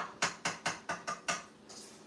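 Wire whisk clinking against the side of a stainless steel mixing bowl while mixing flour, sugar and softened butter: about seven quick strikes, roughly five a second, stopping about a second and a half in.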